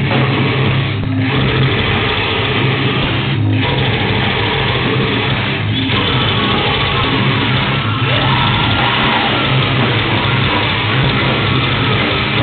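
Live black/death metal band playing loud, dense music: heavily distorted electric guitars, bass and drums.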